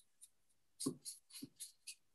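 Faint, quick scratching strokes of a thin metal tool working a brown finish in a small glass cup and over a wood carving, about five strokes in a second starting about a second in.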